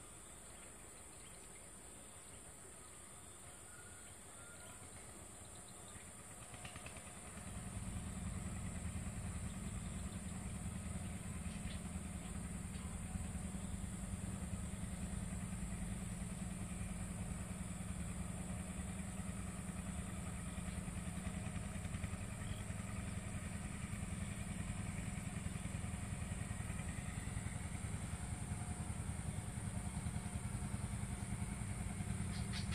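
A small engine running, faint at first, growing louder between about six and eight seconds in, then running steadily at a low, even pitch.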